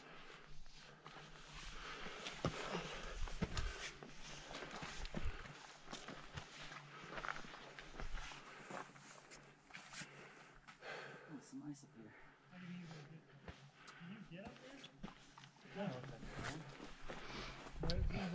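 Boots and hands scuffing and tapping on rock while scrambling, with gear rustling close to the microphone. Faint voices of other climbers come in toward the end.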